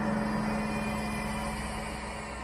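A low, sustained horror-score drone: a steady hum over a deep rumble, slowly fading.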